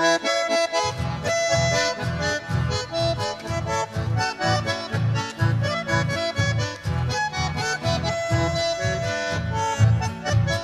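A chamamé played on bandoneón with guitar and guitarrón: the bandoneón carries the melody in held and running notes, and plucked guitarrón bass notes come in about a second in, pulsing in a steady lilting beat.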